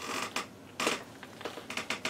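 A few short clicks and rustles of small tools and parts being handled, with no motor running.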